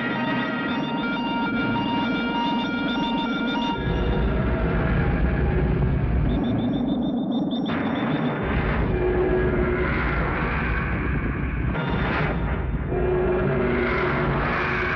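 Film background score of sustained synthesizer tones over a low rumble that swells up about four seconds in, with a fast run of high electronic beeps around the middle.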